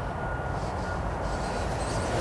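Steady low rumble of outdoor background noise, slowly growing louder, with a faint thin steady tone that fades out near the end.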